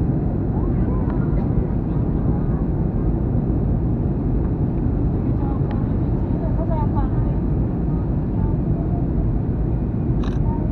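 Steady cabin noise of a jet airliner in flight, heard from a window seat: a dense, even low rumble of the engines and airflow as the plane descends towards landing. Faint passenger voices are mixed in.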